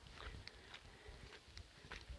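Faint footsteps on a dry dirt road, a few soft, irregular steps over quiet outdoor background.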